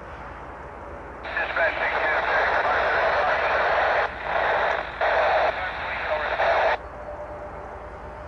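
A railroad radio transmission over a scanner, unintelligible. It opens abruptly about a second in, runs about five seconds with two brief dropouts, and cuts off sharply.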